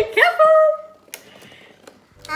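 A young child's high-pitched excited vocal sound for about the first second, then quiet with two light clicks.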